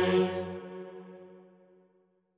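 Male monastic choir singing Byzantine psaltic chant, ending on a long held chord: the low drone note stops about half a second in and the upper voices fade away in the church's reverberation.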